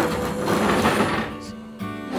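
Wooden teak lounger dragged across brick pavers: a rough scrape that lasts about a second and a half, then stops. Acoustic guitar background music runs underneath.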